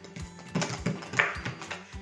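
Kitchen knife cutting through a bonito's tail on a cutting board, in several short strokes, over background music.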